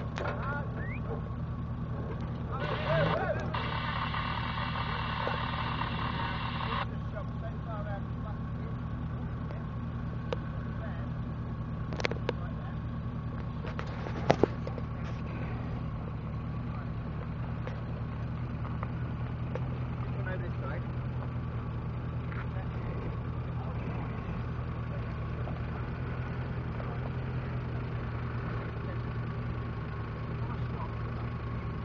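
Off-road 4x4's engine idling steadily, with a few sharp clicks or knocks around the middle.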